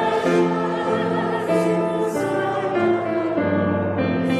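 Church choir singing, led by a woman cantor, in slow held notes that step from chord to chord.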